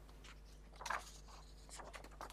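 Quiet hearing-room tone with a steady low hum, and a brief soft rustle of paper just under a second in, followed by a few faint ticks near the end.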